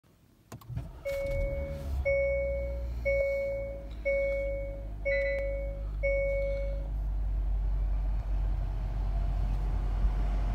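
A car's ice-warning chime beeps six times, about once a second, warning of possible ice on the road in the freezing cold. Under it the car's engine idles with a steady low hum, which starts after a few clicks near the beginning.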